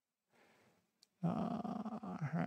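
A single click, then a man's long, drawn-out "uhh" of hesitation, held at one steady pitch.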